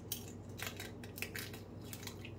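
A cracked eggshell crackling as fingers pry it apart, about five short crackles spread across two seconds. A faint steady low hum runs underneath.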